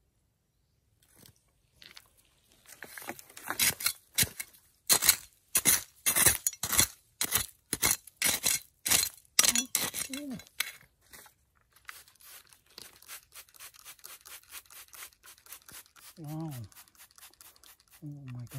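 Small metal hand trowel digging and scraping into gritty, pebbly soil in quick irregular strokes, about two a second and loudest in the first half, then lighter, faster scraping. A short voice sound comes near the end.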